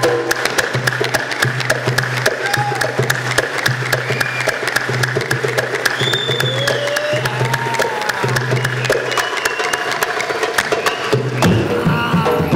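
Live Bushehri ensemble music: quick, even percussion strokes over a pulsing low drone, with a melody line that slides between notes. Deeper sound fills in shortly before the end.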